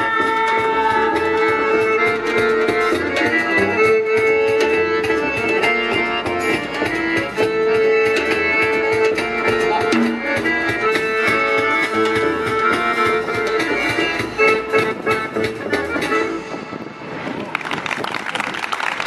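Live acoustic folk band playing: accordion holding sustained notes and chords over hand-drum percussion and double bass. The tune ends about a second and a half before the end, and clapping starts.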